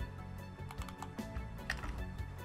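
Typing on a computer keyboard: a run of irregular key clicks as a password is entered, over steady background music.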